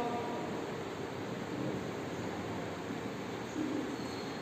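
Steady, even background hiss of the room's noise floor, with no distinct sound standing out.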